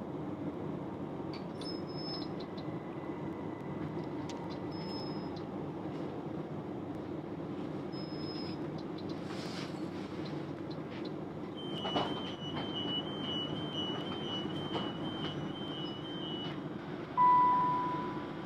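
Steady low hum of a railway train or station, with a few short electronic beeps in the first half and a run of quick two-note beeps in the middle. A single louder beep near the end is the loudest sound.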